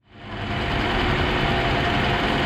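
1989 Toyota Corona's 3S-FE 2.0-litre four-cylinder engine idling steadily, heard close up at the open engine bay; the sound fades in over the first half-second.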